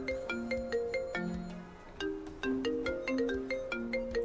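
A mobile phone ringtone playing a marimba-like melody: a run of short, bright notes, a few a second, with the phrase repeating about halfway through.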